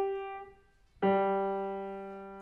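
Grand piano played solo: a chord dies away into a brief pause, then a new chord is struck about a second in and rings on, slowly fading.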